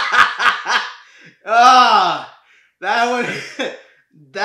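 A man laughing hard: quick breathy bursts, about four a second, through the first second, then two longer drawn-out laughs.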